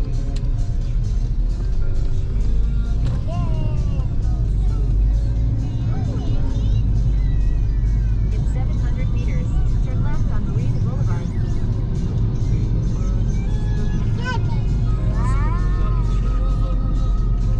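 A car driving on a city road, heard from inside the cabin as a steady low rumble. Music with a singing voice plays over it.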